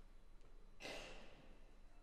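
Near silence during a rest in the music, broken about a second in by one short, audible breath.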